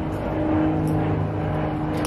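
Airplane passing overhead: a steady low engine drone with a few level humming tones.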